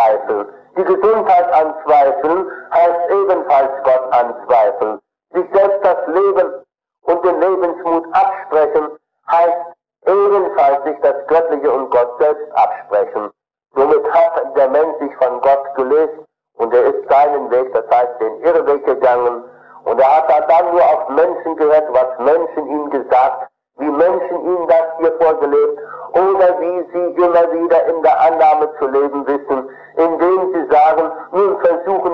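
Speech only: a man lecturing in German, from an old 1957 recording.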